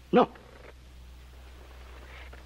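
A man says a single short "No," then a pause with only a faint, steady low hum from the soundtrack.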